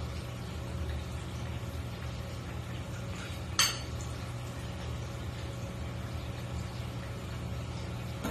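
A utensil scraping once against a bowl of macaroni about three and a half seconds in, over a steady low room hum.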